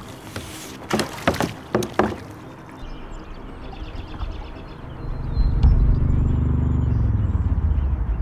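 Plastic sit-on-top kayak being boarded and paddled: several sharp knocks of paddle and body against the hollow hull in the first two seconds. A low, steady rumble builds about five seconds in and is the loudest sound near the end.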